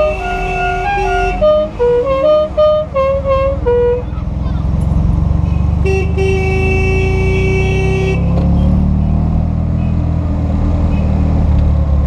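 A musical car horn plays a quick tune of changing notes for the first few seconds, then a single steady horn blast of about two seconds sounds midway. Under it runs the low engine of a vintage Fiat 500, heard from inside the cabin, its pitch rising near the end as the car picks up speed.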